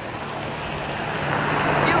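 Street traffic noise of a passing vehicle, a steady rushing that grows louder over the couple of seconds, with a low hum underneath, on a camcorder's built-in microphone.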